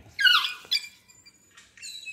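A high, squeaky animal call that falls in pitch, followed by a shorter second call. Near the end a bird starts a rapid high trill.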